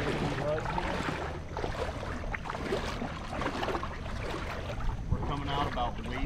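Wind buffeting the microphone over small waves lapping against a small boat's hull, a steady low rumble with watery splashing.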